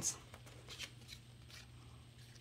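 Faint, intermittent rustling of paper slips and small cards being handled and shuffled by hand, in a few short, light scrapes.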